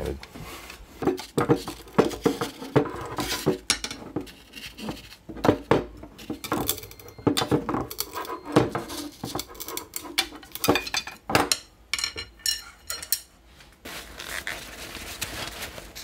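Irregular clicks, knocks and light clatter of carbon fiber arrow shafts and a small metal tube cutter being handled and set down on a tabletop.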